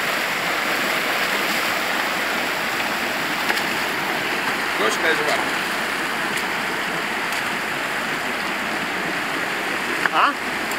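Shallow river rushing steadily over stony riffles and small rapids.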